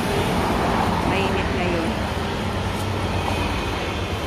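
Steady road traffic noise from passing cars and scooters, with faint voices of passers-by in the background.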